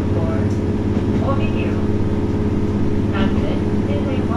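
JR Hokkaido H100 diesel-electric railcar under way, its engine and generator running with a steady low hum of several tones, heard from inside the car behind the cab. Snatches of voices come through briefly, about a second in and again near three seconds.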